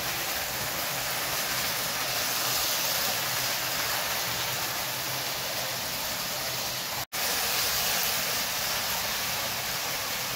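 Lionel O gauge toy train running on three-rail track, a steady whirring hiss of motor and wheels. The sound cuts out for an instant about seven seconds in.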